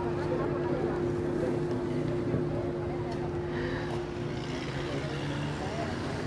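A steady low engine hum, holding one pitch and fading out about five and a half seconds in, over faint background chatter.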